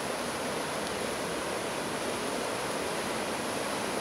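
Steady, even rushing noise of woodland ambience, with no distinct events.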